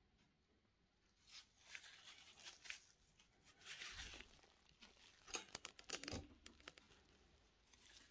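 Faint handling noise from gloved hands at the work surface: soft rustling and scattered light clicks, with a quick cluster of clicks about five to six seconds in.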